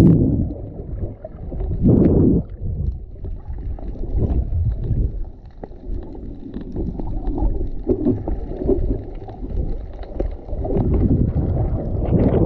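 Muffled underwater sloshing and rumble of moving water picked up by a camera held underwater, swelling louder about two seconds in and again near the end.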